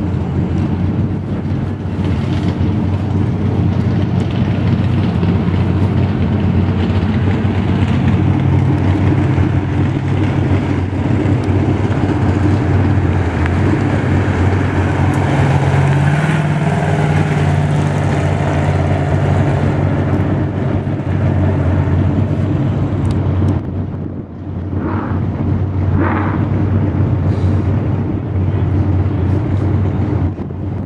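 A stock car's engine running hard around the track, loud and steady, growing brighter and higher as the car passes close about halfway through, then briefly dropping away a little later before it builds again.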